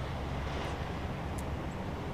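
Steady noise of road traffic, with a faint click about one and a half seconds in.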